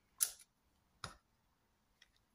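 Two brief handling noises as shredded cheese is sprinkled by hand over a foil-lined pizza: a short rustle about a quarter second in, then a light tap about a second later.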